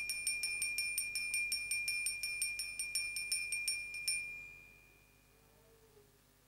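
Altar bell rung rapidly, about five strokes a second, over one steady ringing note. It stops about four seconds in and rings out. This is the bell rung at the elevation of the consecrated host.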